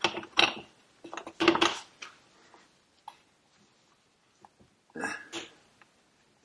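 Short knocks and clinks of a piston and its piston pin being handled in gloved hands, in a few quick clusters in the first two seconds and again about five seconds in, with quiet between.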